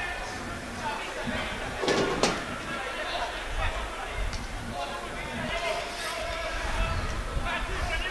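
Football pitch-side sound: distant shouting voices of players and fans, with two sharp thuds of the ball being kicked about two seconds in.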